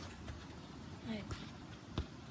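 Faint outdoor background noise, with a single short knock near the end, such as a foot touching the football.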